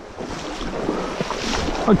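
Shallow stream water rushing and splashing, growing louder about half a second in, with wind buffeting the microphone.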